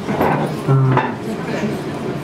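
A man's voice talking, with a couple of light clinks of tableware about the start and about a second in.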